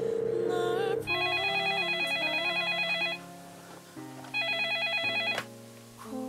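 Telephone ringing with an electronic warbling ring: a long ring, a short pause, then a second shorter ring that cuts off. Soft background music runs underneath.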